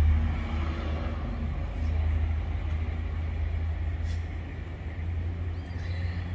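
Steady low rumble of road vehicles.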